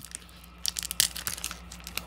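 Foil trading-card booster pack wrapper crinkling in the hands, a run of irregular crackles starting about half a second in.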